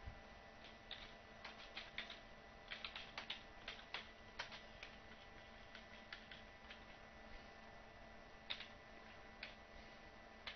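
Faint typing on a computer keyboard: irregular key clicks in quick clusters during the first half, then only a few scattered keystrokes.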